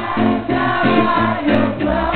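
Live band playing: strummed guitar and bass chords in a steady rhythm, with voices singing over them. The sound is dull, with no top end.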